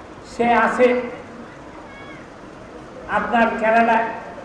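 A man's voice speaking into a microphone in two short phrases, with a pause of about two seconds between them.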